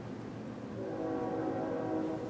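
A distant train horn sounding one held chord of several steady tones, starting about a second in and still sounding at the end.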